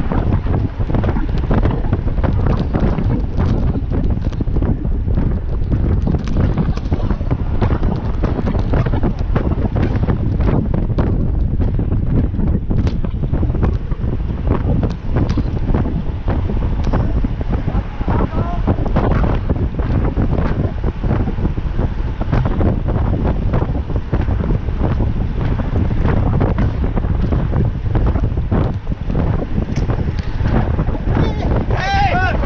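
Wind buffeting the microphone of a camera riding on a road bike at speed in a bunch of cyclists, a steady loud rumble with scattered knocks and rattles from the road.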